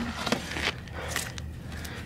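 Faint rubbing and a few small ticks of a hand smoothing wet cement-and-sand mud in a tire-rim mould, over a steady low rumble.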